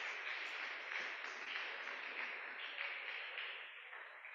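Congregation applauding, a dense steady clapping that thins and dies away near the end.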